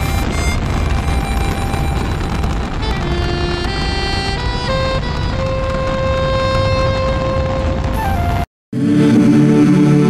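A steady, loud rocket-launch rumble under music, cutting off abruptly about eight and a half seconds in; after a brief gap a new, slow music track begins.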